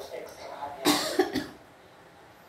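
A person coughing: one short harsh cough about a second in, after a brief vocal sound at the start.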